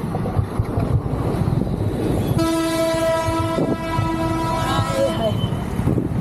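A vehicle horn held for about three seconds on one steady note, starting a little over two seconds in. Under it runs the low rumble of wind and engine from a moving motor scooter.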